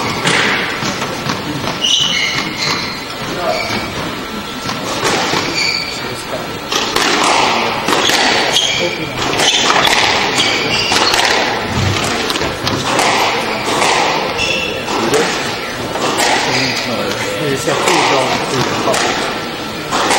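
Squash rally: the ball repeatedly struck by rackets and thudding off the walls of the court, with short high squeaks of shoes on the wooden floor.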